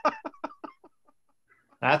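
A person laughing: a quick run of short "ha" pulses that trails off within the first second, then a brief quiet gap.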